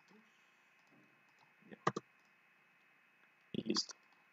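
Computer keyboard and mouse clicks: a couple of sharp clicks about two seconds in, then a short, louder cluster of clicks near the end.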